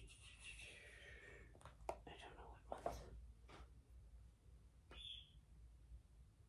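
Near silence: room tone with a few faint clicks of a magazine being handled.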